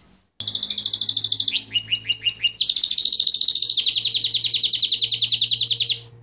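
Fife Fancy canary singing a loud, unbroken song of rapid high trills. About a second and a half in, the fast trill gives way to a run of about five slower falling notes, then goes back to fast trilling, dropping lower for the last two seconds before breaking off abruptly.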